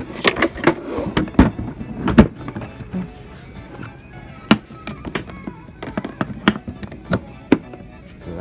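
Hard plastic clicks and knocks from an ArtBin storage case being handled, its lid and latches knocking, loudest and most frequent in the first two seconds or so. In-store background music plays throughout.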